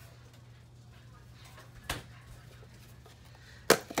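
Low steady hum, then a light knock about two seconds in and a sharp, louder knock near the end: a plastic container of frozen coffee ice cubes being set down on a kitchen counter.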